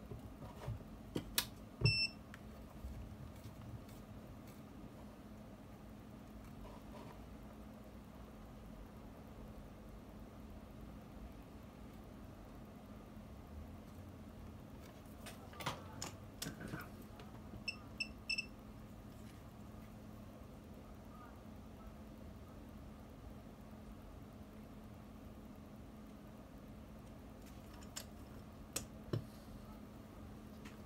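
Short electronic beeps from the control buttons of repair-bench equipment: one about two seconds in and three quick ones around eighteen seconds, over a steady low hum, with a few light clicks of handling.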